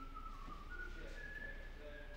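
High whistled tones: a few thin notes, each held briefly and stepping up and down in pitch, over a low steady hum.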